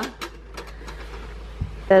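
A few light clicks and a soft knock from plastic toy pieces being handled and set down on carpet, over low room noise.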